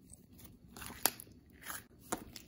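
Thick slime being squished and pressed by hand: soft sticky crackles, with one sharp pop about halfway through.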